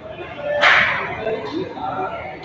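A single sharp swish about half a second in, sudden and fading within half a second, over faint voices.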